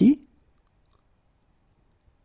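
A voice finishes saying a French phrase, then near silence.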